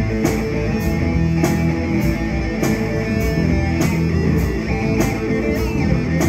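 Live blues-rock instrumental played on two electric guitars over a steady drum beat, about one hit every 0.6 seconds.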